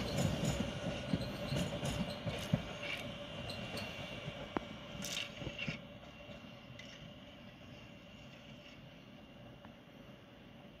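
Oslo Metro MX3000 train running away along the track, its wheel and rail noise fading over about six seconds, with scattered clicks and a steady tone under the rumble.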